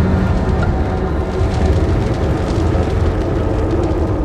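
A large fire burning: a loud, steady low rumble with crackling.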